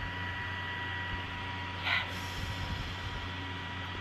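A small handheld fan powered by two AA batteries runs close to the face, making a steady whir of moving air with a thin, even whine.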